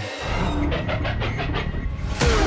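A low rumble with a rapid rattling clatter over it, part of the trailer's sound design.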